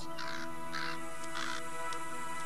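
Crow cawing three times, harsh calls about half a second apart, over steady background music.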